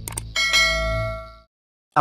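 Notification-bell sound effect of a subscribe animation: two quick clicks, then a bright bell ding that rings out and fades over about a second above a low hum.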